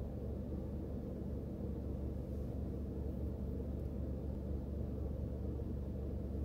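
Steady low rumble and hum inside a car's cabin, with no distinct sounds standing out.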